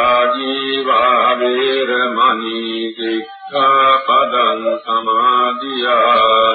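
Buddhist chanting: a voice intoning long held notes in a steady melodic line, with a short break about three seconds in.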